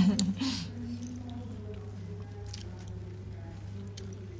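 A woman's short, loud laugh or vocal outburst right at the start, then faint low voices over a steady low hum.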